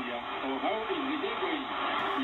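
Shortwave broadcast from WRMI on 5800 kHz heard through a Malahit-clone SDR receiver: a voice behind steady static hiss, with the receiver's noise reduction switched off. The audio is narrow, with the treble cut away.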